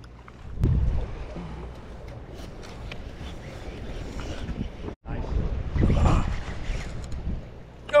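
Wind gusting on the microphone on an open boat deck at sea, with a steady low hum underneath and faint voices in the background.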